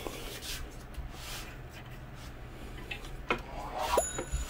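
Faint rubbing and handling noise as a hand moves over a desk and picks up a small HDMI audio extractor box.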